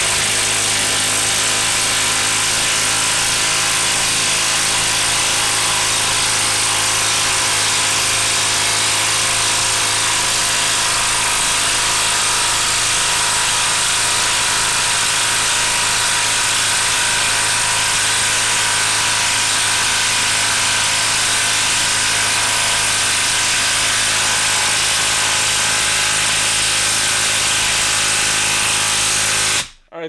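Makita brushless 1/2-inch cordless impact wrench hammering without a break as it drives a long screw into a log, the screw going down very slow in the dense wood. The hammering is steady and cuts off suddenly just before the end.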